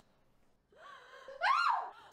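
A woman crying out in pain, a short 'ah' as she is stabbed with a knife. A faint breath comes about a second in, then the cry, which rises and falls in pitch.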